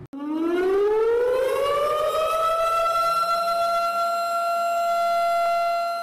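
Meme sound effect: one long, loud siren-like wail that rises in pitch over the first two seconds or so, then holds one steady pitch.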